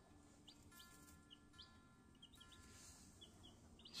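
Faint, scattered high peeps of newly hatched chicks: about a dozen short single chirps spread over a few seconds.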